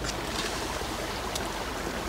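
Steady rushing outdoor wind noise, with no distinct event in it.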